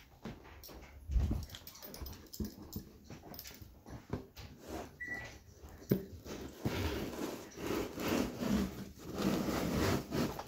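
Tin snips cutting along a cardboard shipping box: a series of short cuts and clicks, with the box being handled, busier in the second half.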